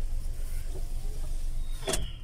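Steady low rumble of a car, heard inside its cabin, with one sharp click just before the end.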